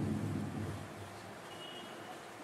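A man's closed-mouth hum, the tail of an "mm-hmm", fading out in the first half-second or so, then quiet room noise with a faint short high beep near the end.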